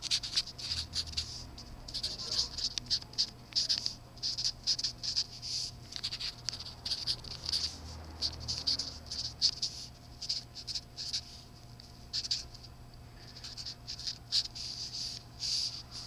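A pen scratching on notepad paper close to the microphone as words are handwritten, in quick irregular strokes with a short pause about three quarters of the way through.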